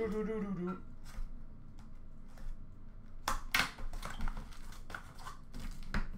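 A sealed hockey card box being opened and packs handled: rustling and tearing of wrapper and cardboard, with two sharp crackles a little over three seconds in.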